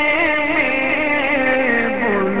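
A male voice singing an Urdu naat, holding long notes with wavering ornaments and sliding down to a lower note near the end.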